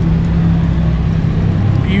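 A steady, loud low mechanical hum with no change, under faint background chatter from people.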